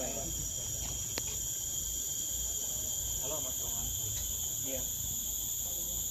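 Steady high-pitched insect chorus, droning unchanged in several high pitches, with faint voices murmuring underneath.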